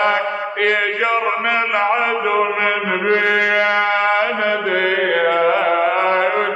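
A man's voice chanting a slow, mournful lament in long held notes with melodic ornaments, pausing briefly for breath twice.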